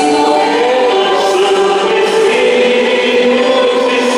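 Many voices singing a hymn together in a large, reverberant church, in long held notes that shift slowly in pitch.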